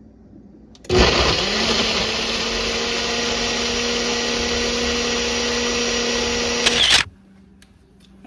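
Ninja personal blender running for about six seconds, blending fruit, greens and juice into a smoothie. The motor starts about a second in, rises quickly to a steady pitch, and cuts off suddenly near the end.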